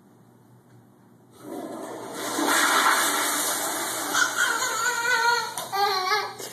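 Toilet flushing: a loud rush of water starts suddenly about a second in and keeps going steadily.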